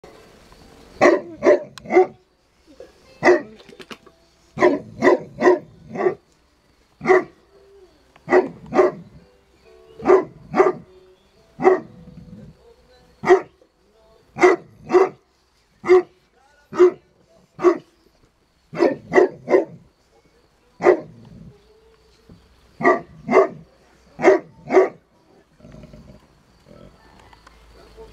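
Neapolitan mastiff barking repeatedly, loud single barks and quick runs of two to four, a second or two apart.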